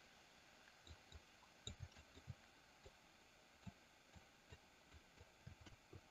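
Near silence: faint room tone with a few soft, scattered taps.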